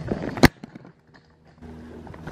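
Handling noise from a camera being picked up and turned: one sharp knock about half a second in.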